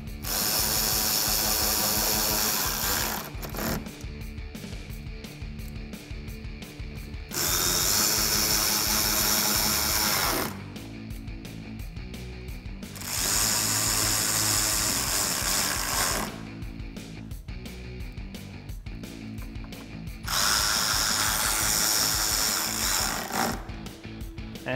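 Cordless electric ratchet with a 7 mm socket running four times, about three seconds each, driving screws into the truck's lower fascia. Background music fills the pauses between runs.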